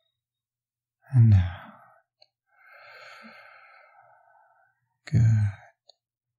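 A man's slow, audible breathing close to the microphone, paced as a calming breath for the listener to follow: a short voiced sigh about a second in, then a long breath of about two seconds, and another voiced sigh near the end.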